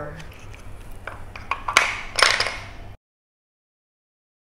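A handful of wooden spindles clattering against each other and into a compartment of a wooden spindle box, with light clicks and then two louder clatters about two seconds in. The sound cuts off abruptly near the end.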